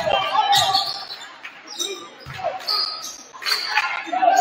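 Basketball being dribbled on a hardwood gym floor: a few separate bounces, with the reverberation of a large hall.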